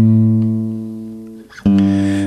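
Acoustic guitar chord ringing and slowly fading, then a fresh strum about one and a half seconds in.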